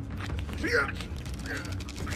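Creaking with scattered clicks and a couple of short squeaks over a low steady hum.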